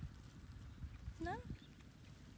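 Low rumbling noise with soft bumps, like wind and handling on the microphone, and one short rising vocal sound about a second in.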